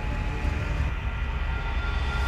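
A steady, deep rumbling drone with faint sustained tones above it: an ominous sound-design underscore.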